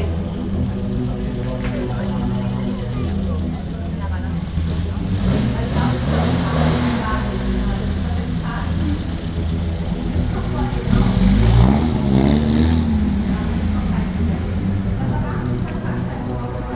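Engine of a vintage open sports car running at low speed as it drives past, with a couple of revs that rise and fall, the loudest about eleven seconds in. Voices can be heard over it.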